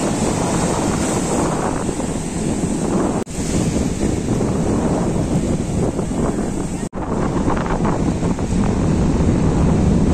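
Small sea waves breaking and washing up a sandy shore, with strong wind buffeting the microphone. The sound drops out briefly twice, about a third and two-thirds of the way through.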